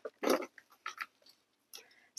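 Hands pressing and firming cactus potting mix around a citrus tree's roots in a pot: about four short, soft rustles.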